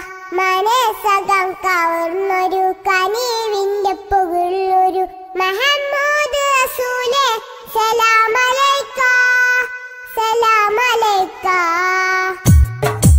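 A solo voice sings a Nabidina (Milad-un-Nabi) devotional song with no accompaniment, in long held notes with ornamental bends and short breaths between phrases.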